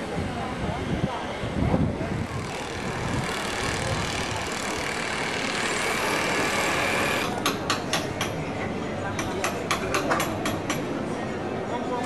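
Outdoor town ambience: indistinct voices of passers-by over a steady background noise, with a quick run of sharp clicks or taps in the second half.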